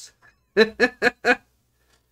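A man laughing in four short, evenly spaced bursts about half a second in.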